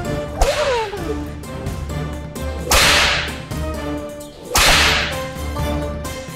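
A whip cracking three times, about two seconds apart, over dramatic background music with a low pulsing beat. These are the lashes ordered as punishment.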